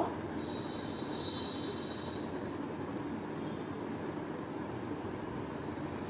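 A whiteboard marker drawing, giving a faint thin high squeak from about half a second in for under two seconds, over a steady background hiss of room noise.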